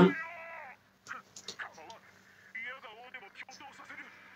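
Japanese anime dialogue: a loud shouted line trails off in the first moment, then after a pause quieter talking comes in about two and a half seconds in.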